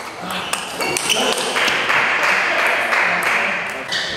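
Table tennis rally: the celluloid-type plastic ball clicking sharply off bats and table at an irregular pace. A loud, broad rushing noise runs from about a second and a half in until near the end.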